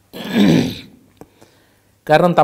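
A man clearing his throat once behind his hand, a single rough burst lasting under a second.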